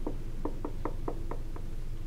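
Dry-erase marker clicking against a whiteboard as numbers and a fraction are written: about six short, sharp taps in the first second and a half.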